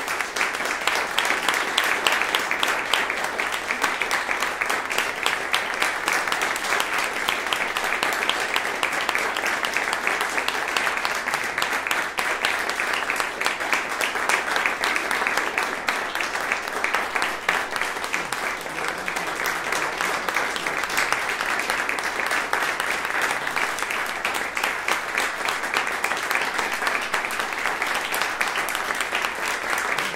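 Audience applauding steadily, a dense patter of many hands clapping with no break.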